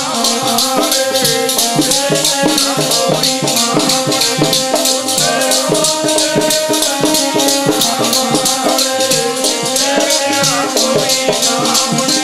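Kirtan devotional music: a fast, even beat of jingling percussion over sustained melody tones, without clear words.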